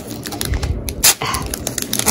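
A foil Pokémon booster pack wrapper crinkling and tearing open in the hands: a run of sharp crackles, with one louder snap about a second in.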